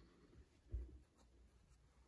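Faint handling noise of baseball caps being moved on a shelf: a light scratchy rustle of cap fabric and brims, with a soft low thump about three quarters of a second in.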